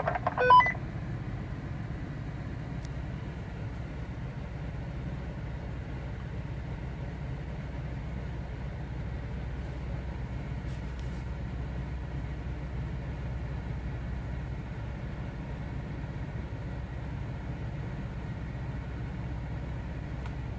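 Lexus GX SUV's V8 engine running at low revs, a steady low rumble, as it crawls on a steep rocky trail climb. A short high beep-like tone sounds in the first second.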